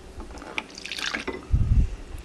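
A little water trickling into a glass mixing bowl, with a short low thump about three-quarters of the way through.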